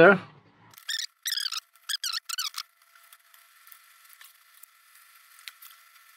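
A few short, wavering high-pitched squeaks about one to two and a half seconds in, then faint hiss with a thin steady whine.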